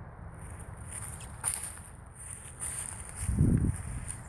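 Footsteps on dry leaf litter and twigs, with a few light snaps or rustles. A louder low thump comes near the end.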